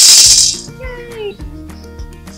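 Dry popcorn kernels poured from a measuring cup into a stainless steel pot, a dense rattle against the metal that stops under a second in. Background music plays on after it.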